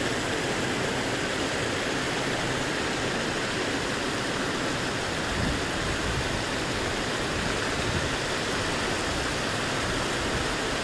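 Steady rush of fountain water pouring over the edge of a shallow reflecting pool and down a stepped cascade.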